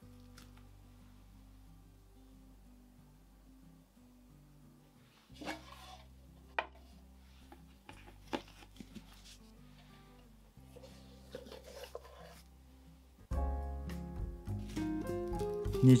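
Quiet background music with a few brief handling sounds as the raisin dough log is pressed shut and set into a metal loaf pan. Near the end, plastic wrap crinkles as it is pulled over the pan.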